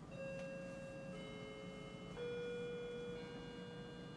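Doorbell chime playing a slow tune of bell-like notes, a new note about once a second, each ringing on under the next.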